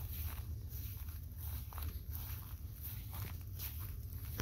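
Footsteps through grass and dry weeds on a field path, about two soft steps a second, over a steady low rumble.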